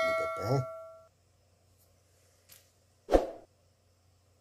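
An electronic ding, a single bell-like chime fading out over about the first second, sounding as verification of the freshly written chip starts in the programmer software. A single dull thump about three seconds in.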